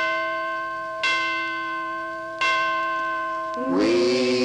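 A bell-like chime struck three times on the same note, about a second and a third apart, each stroke ringing on and slowly fading. A singing voice comes in near the end.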